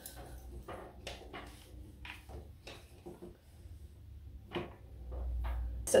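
Faint small clicks and rustling as a flat iron is clamped and worked along a section of hair, with one sharper click about four and a half seconds in.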